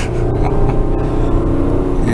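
Car engine and road noise heard from inside the cabin, the engine note climbing slightly as the car accelerates.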